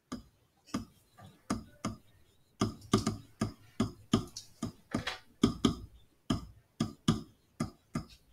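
Stylus writing on a digital pen surface: a run of short, irregular taps and scratches, about three a second, as a phrase is handwritten.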